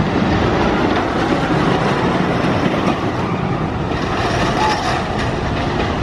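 Wooden roller coaster train running along its wooden track: a steady rumble with rapid clacking from the wheels, easing slightly about halfway through.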